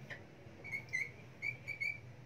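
Felt-tip marker squeaking on a whiteboard as a word is written and underlined: about six short, high squeaks in quick succession in the second half.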